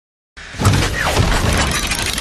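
Glass-shattering sound effect of an animated logo intro, bursting in from silence about a third of a second in and carrying on as a dense crackle of breaking glass over a deep low rumble.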